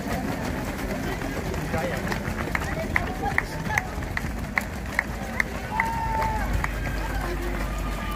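The footsteps of a large field of marathon runners passing close by on a wet road, over a background of voices. For several seconds in the middle, a series of sharp regular ticks about two and a half per second stands out.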